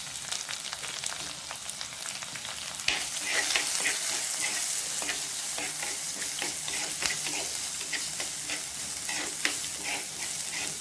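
Chopped onion, green chillies, dried red chillies and curry leaves sizzling in hot oil in a black pot. About three seconds in, a spoon starts stirring them: the sizzle gets louder, with many small scrapes and taps of the spoon against the pot.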